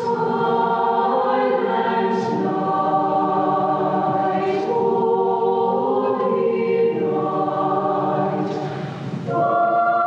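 Mixed choir of young men's and women's voices singing held chords in several parts. About nine seconds in the sound dips briefly, then a new, louder phrase begins.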